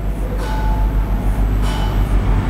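A loud, steady low rumble of mechanical or traffic noise, with a marker pen squeaking on a whiteboard as a hexagon is drawn.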